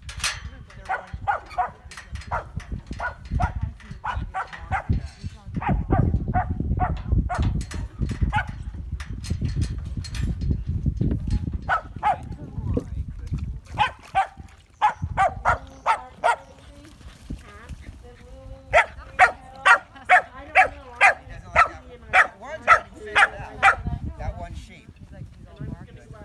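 A herding dog barking repeatedly at sheep in short, sharp barks. The barks speed up to about two a second and are loudest near the end, with a low rumble partway through.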